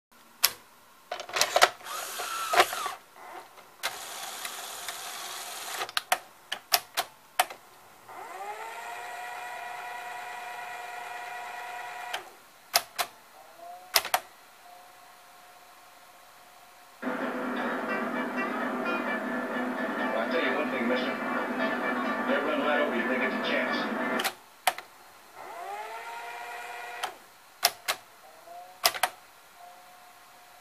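Sony SL-HF550 Betamax VCR's cassette loading and tape threading mechanism at work: a run of sharp mechanical clicks and clunks, a burst of hiss, and motors spinning up twice with a rising whine that settles into a steady hum. In the middle, for about seven seconds, louder voices and music play.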